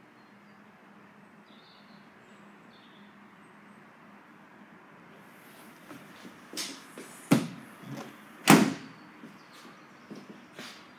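Peugeot 5008 tailgate being brought down and shut: after a quiet stretch, a few light knocks, then a sharp knock and, about a second later, the loudest thud as it latches.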